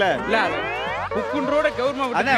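A comic 'boing'-style sound effect: a quick rising glide in pitch lasting under a second, followed by a wavering, warbling tone, laid over the banter as an edited-in gag sound.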